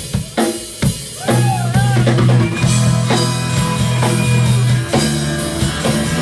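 Live rock band: a drum kit plays alone for about the first second, then electric guitars and bass come back in with the drums, a lead line bending in pitch as they enter.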